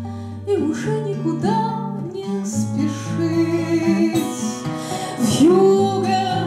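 Woman singing with her own strummed twelve-string acoustic guitar accompaniment, a poetic acoustic rock song.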